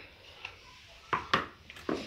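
A few short knocks of a high-heeled shoe being set down on a tiled floor, about a second in and again near the end.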